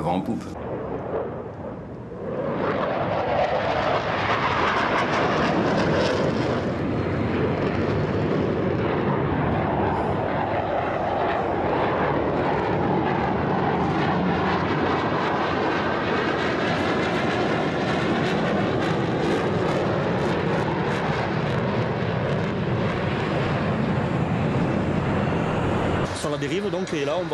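Formation of military jets flying a display pass, their engine noise setting in about two seconds in and holding loud and steady, with a swirling, phasing sweep as the aircraft move overhead.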